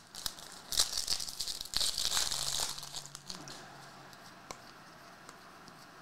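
A foil trading-card pack wrapper (2023 Panini Prizm Football hobby pack) being torn open and crinkled, loudest for the first three seconds or so. It then fades to faint handling sounds as the cards come out.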